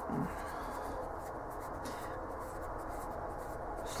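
A brief voiced hum at the very start, then a steady, faint room hiss with no distinct events.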